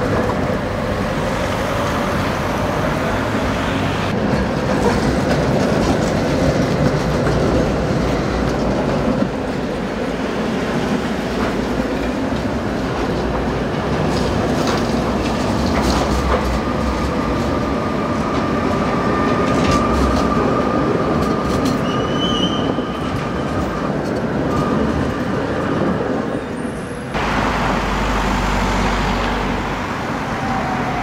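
Tatra T3-family trams running on street track: a steady rumble of steel wheels on rails, with a long, steady whine in the middle. About three seconds before the end, the sound changes abruptly to a deeper, heavier rumble from another tram.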